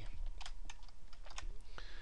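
Computer keyboard typing: a run of irregular, quick key clicks as a spreadsheet formula is keyed in and entered.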